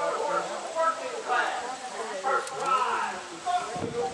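Indistinct talking by people near the microphone, with no clear words.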